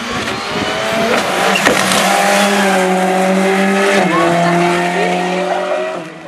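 Rally car engine running hard as the car passes at close range, a steady note that drops in pitch about four seconds in as it goes by, then fades.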